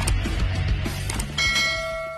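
Intro music, then a single bell-chime sound effect struck about one and a half seconds in that rings on as the music fades out.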